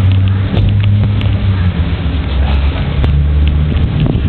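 A steady low mechanical hum from a running motor, with a few faint clicks.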